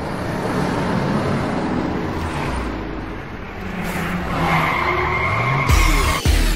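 Car sound effect: an engine running and revving, with tires squealing over the last second and a half and a sudden heavy hit just before the end.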